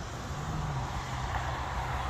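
Steady road traffic noise: an even low rumble with a faint hum and hiss.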